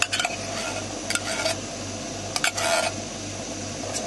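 A spoon stirring and scraping stew in a metal pot on a cartridge gas camping stove, a few short scrapes and clinks over the burner's steady hiss.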